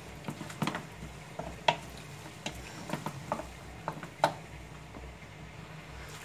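Utensil stirring a thick shredded chicken and carrot filling in a stainless steel pot on the stove, with a few light clicks of the utensil against the pot's metal.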